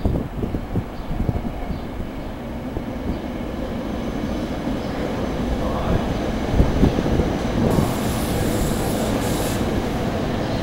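SEPTA Silverliner IV electric multiple-unit railcar passing close by, with a steady rumble and its wheels knocking over the track. It grows louder through the middle, and there is a high hiss near the end.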